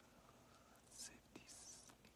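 Very faint whispering by a man's voice, with brief soft hissy sounds about a second in and again near the end; otherwise near silence.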